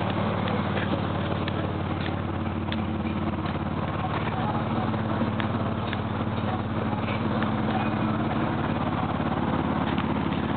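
Nissan Maxima's V6 engine idling steadily, a low even drone through the exhaust.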